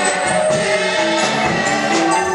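Gospel worship song sung by a group of voices with instrumental backing, steady and loud.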